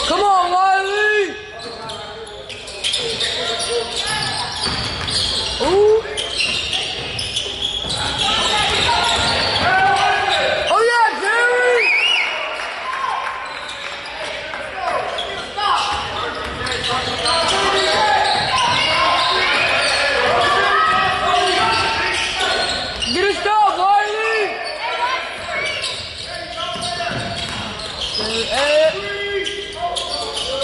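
Basketball game sounds in an echoing gym: a ball dribbled on the hardwood floor, short squeaks from sneakers, and players and spectators calling out.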